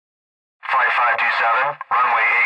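An air traffic controller's voice over a radio channel, thin and band-limited, giving a runway takeoff clearance; it starts about half a second in after silence.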